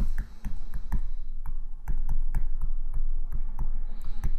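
A pen stylus tapping and clicking on a tablet while writing: a string of irregular light ticks over a steady low hum.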